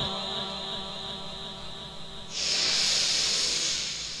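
The echo of the reciter's last sung note dies away through the PA system's reverberation. About two seconds in comes a loud breathy hiss lasting about a second and a half: the reciter drawing a deep breath into the microphone before the next verse.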